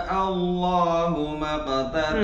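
A man reciting the Quran in a slow melodic chant, holding long drawn-out vowels and stepping his pitch down a few times, sliding lower near the end.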